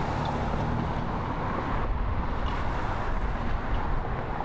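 Steady outdoor background noise with a low rumble, like distant traffic, its tone shifting slightly about halfway through.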